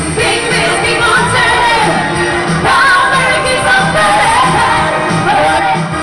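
A woman singing live into a microphone over loud, up-tempo backing music with a steady beat.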